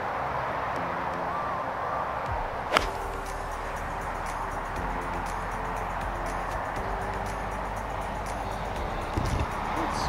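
A 56-degree wedge striking a teed-up golf ball on a full, hard swing: one sharp crack about three seconds in. Background music with held notes runs underneath.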